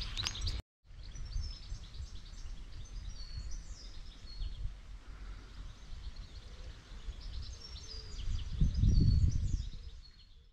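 Outdoor ambience of small birds chirping and singing over a low, steady rumble, which swells louder for about a second near the end.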